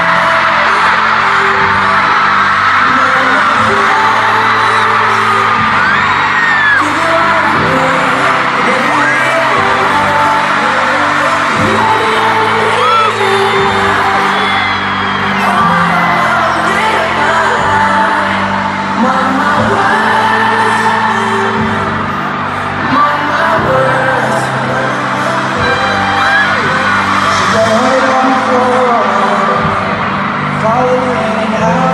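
Arena crowd screaming and whooping continuously over loud amplified pop music with singing; many shrill voices rise and fall above the band.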